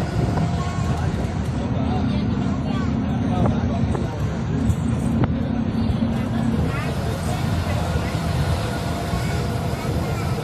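Ashok Leyland Viking bus under way, heard from inside the cabin: a steady low diesel engine drone and road rumble, with a low hum standing out for a few seconds in the middle. Indistinct voices sit underneath.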